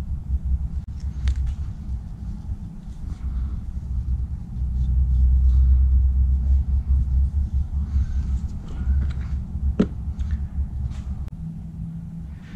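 Low steady rumble that swells for a couple of seconds about halfway through, with a few faint clicks and taps, one sharper near the end.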